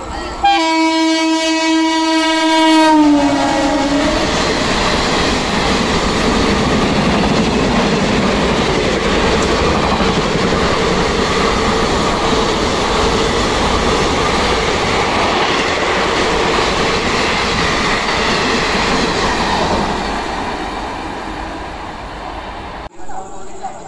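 Express passenger train passing a station platform at high speed. A long horn blast drops in pitch as the locomotive goes by about three seconds in. It is followed by a steady rush and clatter of coaches over the rails, which eases off near the end.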